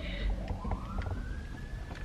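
A faint siren wailing: one slow rise in pitch that holds high and then starts to fall, over a low steady rumble.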